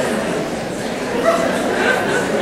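A large audience chattering in a big hall, with a few brief high-pitched voices in the second half.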